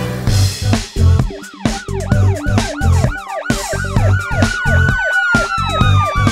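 Upbeat cartoon song intro: a steady thumping beat with a police-siren wail sweeping quickly up and down, about three times a second. A long tone that slides slowly downward comes in about four seconds in.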